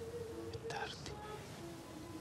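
Quiet film score with soft held notes, and one brief whisper a little under a second in.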